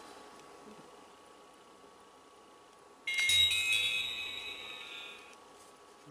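GeekPro 2.0 action camera's power-on chime as it switches on: a short electronic jingle of steady high tones that starts suddenly about halfway through and fades out over about two seconds.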